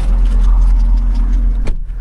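A low, steady engine idle, then the Lexus's driver door shutting with a single sharp thump near the end, after which the rumble is muffled.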